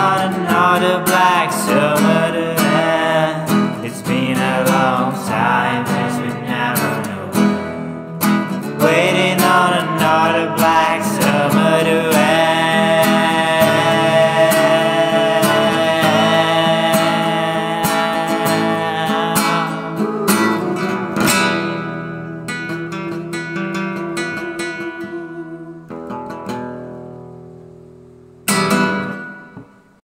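An acoustic guitar is strummed while a man sings over it, ending in a long held note. The guitar then fades away, and one last strum rings out near the end.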